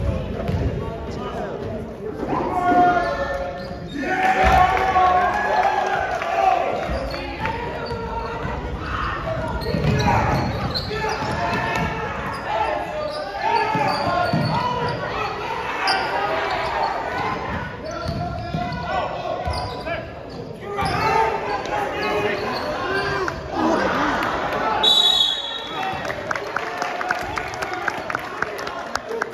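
A basketball being dribbled and bouncing on a gym floor during play, with voices throughout and the echo of a large hall. There is a short high whistle near the end.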